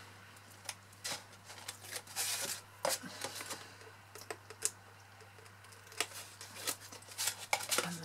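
Irregular small clicks, taps and rustles of a pointed tool picking at the backing of double-sided adhesive tape strips on a cardstock box and peeling it off, with a brief rustle of the backing coming away about two and a half seconds in.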